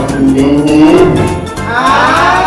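A long, low, drawn-out moo-like call, rising a little in pitch for about a second, with a higher arching call starting near the end, over background music.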